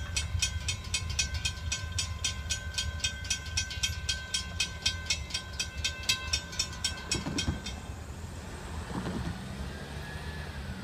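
Railroad crossing bell ringing in rapid, steady strokes while the crossing gates rise after the train has cleared. The bell stops about eight seconds in, under a constant low rumble of the departing train. A car then drives across the crossing near the end.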